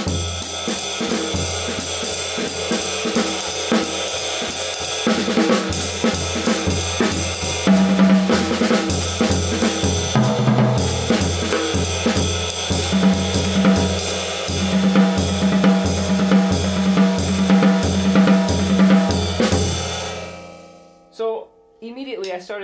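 Jazz drum kit played in swing time: cymbal, snare and bass drum, with a short lick worked in and the playing moving around the kit. The playing stops about 20 seconds in and the kit rings away.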